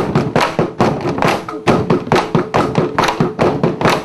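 Traditional Kadazan percussion music: a fast, steady rhythm of struck drums and gongs, several strikes a second, with ringing tones held underneath.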